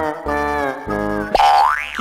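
Comic background music: three held instrumental notes, then one quick rising glide in pitch near the end, like a slide-whistle comedy sound effect.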